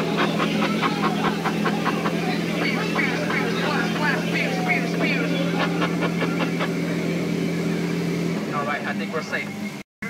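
Jungle Cruise ride boat's motor running with a steady hum, with voices over it; the hum drops away near the end.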